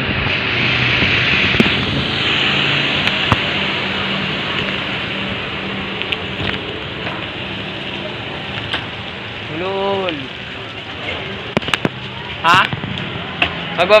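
Wind and rattling noise on the microphone of a shaking camera while cycling, a steady rushing that slowly eases, with scattered sharp clicks from the camera being jostled.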